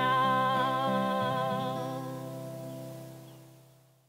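Acoustic guitar's final strummed chord ringing out under a last held sung note with a slight waver, both fading slowly away to silence by the end: the close of the song.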